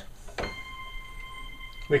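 A single note from a Logic software instrument, played from a MIDI keyboard and heard through speakers. It begins with a click about half a second in, holds at a steady high pitch, and stops just before the end.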